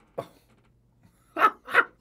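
A man laughing in three short bursts in the second half, after a brief short sound just after the start.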